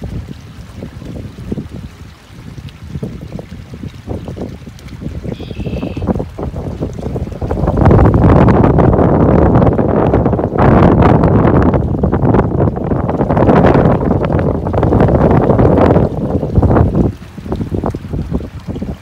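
Wind buffeting the microphone in gusts, weaker at first and then loud and sustained from about eight seconds in until near the end.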